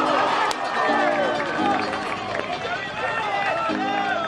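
Background music: a song with singing over repeated steady chords.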